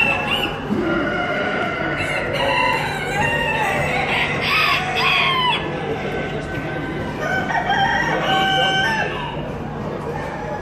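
Roosters crowing in a large show hall: one crow about four seconds in and another about three seconds later, over a steady background din of the hall.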